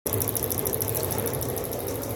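Homemade pulse motor, a magnet rotor on a bearing shaft driven by a coil wound on a microwave-oven transformer core, spinning with a fast, even ticking of about six pulses a second over a low hum.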